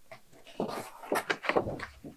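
Paper and cardboard being handled: the sheets of an activity booklet rustling and a cardboard subscription box being opened, in a run of irregular crackles and rustles starting about half a second in.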